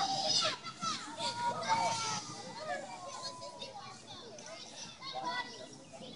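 Several children's voices chattering and calling out at once, overlapping and indistinct, from a group of young kids playing outdoors.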